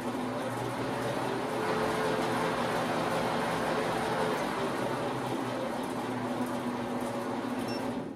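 Precision Matthews PM 1228 benchtop metal lathe running with its spindle and chuck spinning: a steady motor and gear-train hum. It grows a little louder a couple of seconds in as the speed knob is turned, then eases back.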